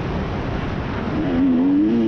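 Dirt bike engine under way on a trail ride, its revs rising and falling as the throttle is worked. The engine note climbs and grows louder in the second half.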